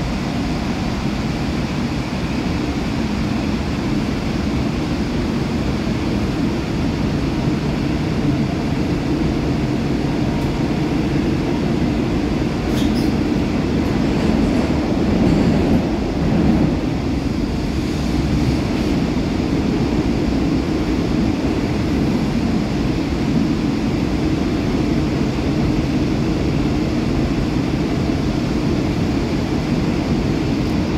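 Steady running noise of a Korail Line 3 subway train (set 395, IGBT-inverter electric multiple unit) heard from inside the passenger car: a continuous rumble of wheels on rail and running gear while the train is under way.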